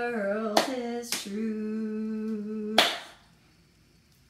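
A woman singing the end of a line and holding the last note for about a second and a half, while clapping the beat with three claps; the last clap cuts the held note off.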